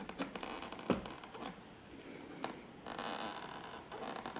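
Faint small clicks and rustling of a braided CPU cooler fan cable being handled as its four-pin plug is pushed onto the motherboard's CPU fan header, with a sharper click about a second in and another about two and a half seconds in.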